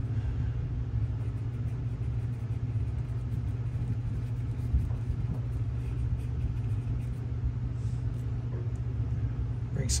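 A steady low hum and rumble throughout, at an even level.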